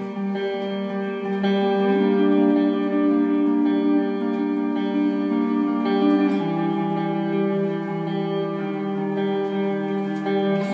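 Solo electric guitar playing a slow instrumental intro of sustained, ringing chords. The chord changes about two seconds in and again a little past six seconds.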